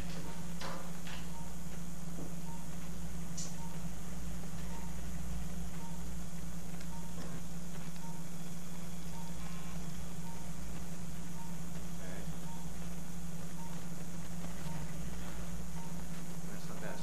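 Steady low hum of a motorized arthroscopic shaver running in the joint. A short, regular beep repeats about every 0.6 s, the pulse tone of a patient monitor.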